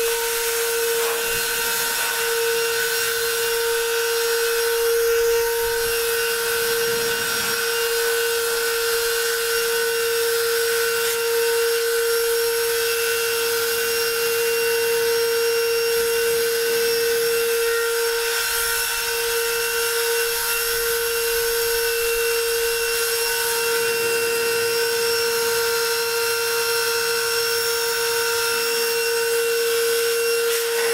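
A vacuum cleaner motor, reused as a homemade blower, running with a steady high whine as it blows sawdust.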